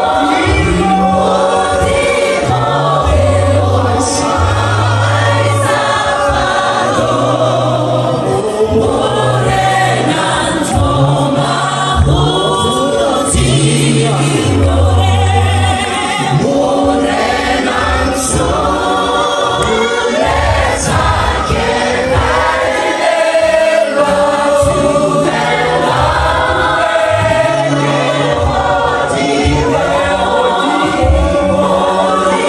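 A church congregation singing a gospel praise song loudly together, many voices at once, over a low bass accompaniment that steps from note to note.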